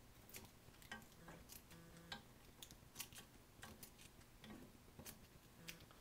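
Faint, irregular snips of scissors cutting the edge of Poly-Fiber polyester aircraft covering fabric, roughly two short clicks a second.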